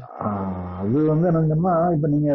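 A man's voice holding long, drawn-out vowels in a chant-like tone, almost unbroken, its pitch stepping up about a second in.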